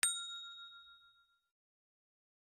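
A single notification-bell chime sound effect: one bright ding struck once, its clear ringing tones dying away over about a second and a half.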